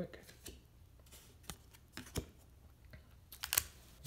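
Hockey trading cards being handled: a few soft clicks and taps spaced out as the cards are shifted in the hand, then a quick flurry of handling clicks near the end.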